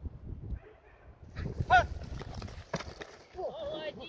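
A dog barking and yelping excitedly as it is sent in on the helper during protection training, with one sharp crack a little before three seconds in.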